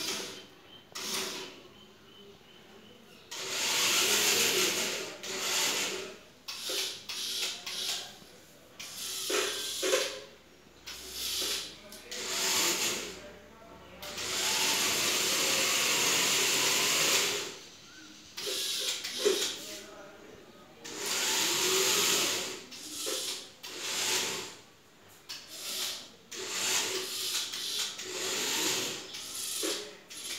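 Small electric gear motors of a wired model truck whirring in starts and stops. There are several runs of a second to three seconds, with short pauses between them.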